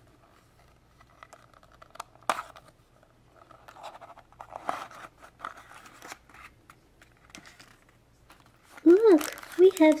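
A plastic Twozies blind-box pod being opened by hand: small clicks, a sharp click a couple of seconds in, then rustling and crinkling as the foil-wrapped contents are tipped out of the pod.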